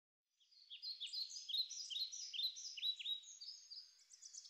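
Small birds chirping: a quick, overlapping run of short high chirps, many sliding down in pitch, starting about half a second in.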